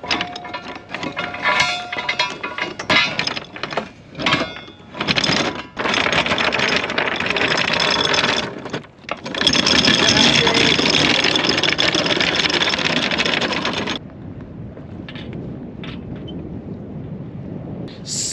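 Anchor chain running out through a Lewmar Tigres windlass and over the bow roller as the anchor is dropped: irregular clanks for the first few seconds, then a loud continuous rattle of chain paying out that stops suddenly about three-quarters of the way through, leaving a quieter steady rush of wind and water.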